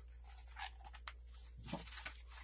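Faint rustling and scraping of a small cardboard box being handled and opened by hand, with one sharp click about a second in.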